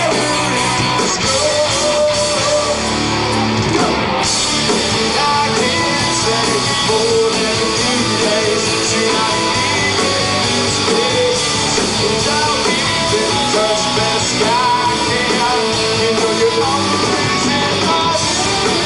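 A rock band playing live in a small club, electric guitars to the fore, loud and steady; the sound turns brighter about four seconds in.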